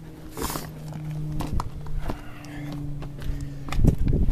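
Handling noise from a camera being moved about: scattered clicks and knocks and a brief rustle about half a second in, over a steady low hum.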